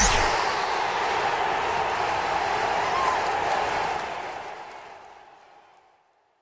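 Outro sound effect of an animated end card: a steady rushing noise, left over from a rising whoosh, that fades out over the last two seconds.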